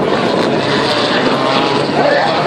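Rally car engine running on the special stage: a loud, steady engine noise.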